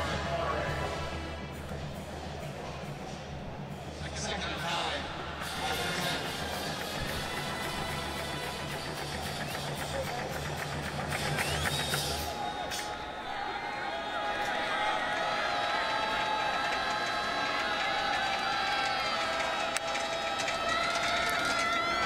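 Stadium crowd noise under music: a low steady beat through roughly the first half, then held, wavering notes for the rest.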